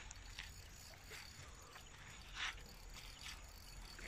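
Faint steady low rumble with a few short, soft scratchy sounds, the clearest about two and a half seconds in.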